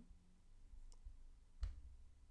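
A computer mouse click about one and a half seconds in, with a fainter tick a little before it, over near-silent room tone.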